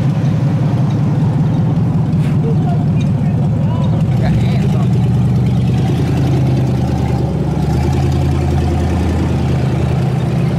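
Motor vehicle engine running close by in street traffic: a steady low drone whose pitch shifts about four seconds in and again near the end.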